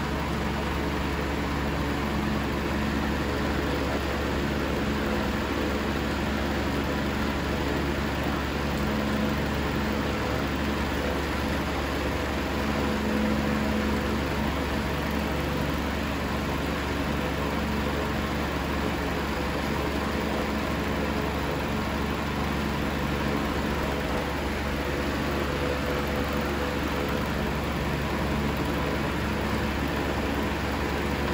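Electric fan running: a steady whir with a low hum underneath.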